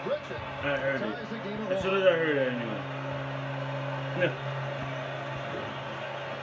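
Faint speech in the background, with a steady low hum coming in about two seconds in and holding steady.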